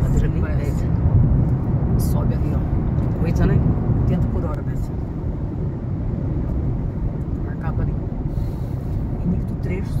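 Steady low road and engine rumble inside a moving car's cabin, with quiet talk over it in the first half.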